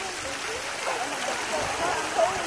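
Steady rushing and splashing of swimming-pool water, with faint children's voices in the background.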